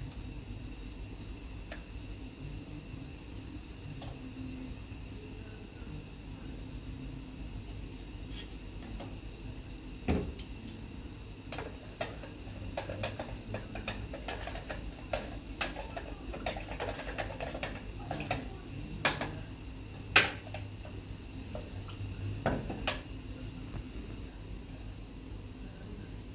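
Kitchen handling sounds of a spoon and glassware: a single knock about halfway through, then a run of small clinks and taps through the second half, the sharpest one near the end. A steady low hum runs underneath.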